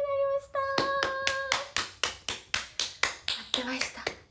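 Rapid, even hand clapping, about five claps a second, starting under a long held vocal note that ends about a second and a half in.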